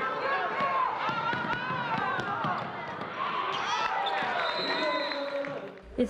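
Gym noise during a basketball game: many crowd voices shouting and chattering at once, with the ball bouncing on the hardwood floor.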